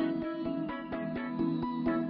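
Background music: plucked, guitar-like notes played in a steady pattern.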